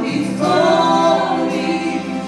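A man and a teenage boy singing together into handheld microphones, holding long notes.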